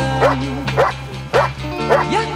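German Shepherd Dog barking at a helper hidden in a protection blind, the hold-and-bark of Schutzhund/IPO protection work: about four barks in two seconds at an even pace. A song with singing and a steady bass line plays loudly over the barking.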